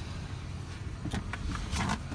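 Someone climbing into a car's driver's seat: handling and seat rustle with a few light clicks and knocks in the second half, over a low steady rumble.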